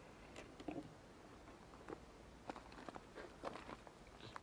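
Near silence, with a few faint, scattered short clicks.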